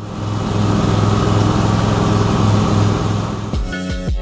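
An engine running steadily and loud, with a deep even hum. Music cuts in near the end.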